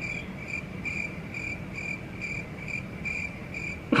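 A cricket chirping steadily, about four short chirps a second, over a low background rumble.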